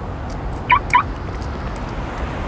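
Two short, high-pitched chirps in quick succession, about a quarter second apart, over a steady low background hum.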